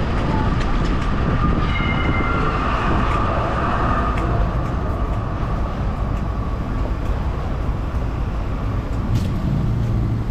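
Tram passing on a city street over steady traffic rumble, with a high whine that comes in about one and a half seconds in and fades out by about four seconds.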